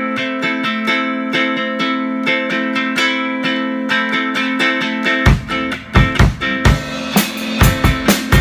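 Epiphone Hummingbird tenor ukulele with low-G nylgut strings, amplified through a small Roland Micro Cube GX, strumming chords in a steady rhythm. A drum kit comes in about five seconds in with bass drum beats, and cymbals join about two seconds later.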